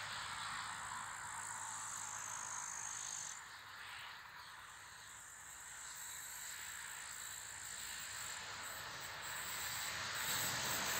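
Faint rolling noise of an approaching Stadler FLIRT electric train, growing louder toward the end over a steady high hiss.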